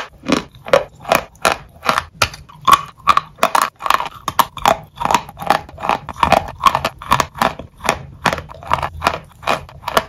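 Dry, brittle white dessert being bitten and chewed: a steady run of sharp, dry crunches, about three a second.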